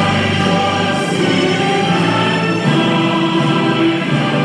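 Many voices singing together with music, holding long notes that change every second or so.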